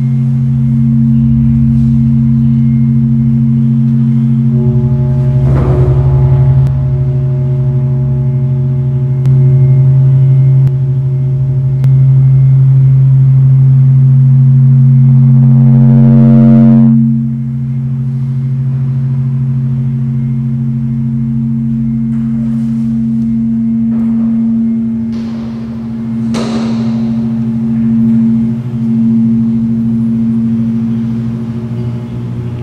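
Electronic drone score: a loud, steady low hum of held tones. Higher held tones join about five seconds in. A gong-like ringing swell builds and cuts off suddenly a little past halfway, and sharp struck accents come near six seconds and again about twenty-six seconds in.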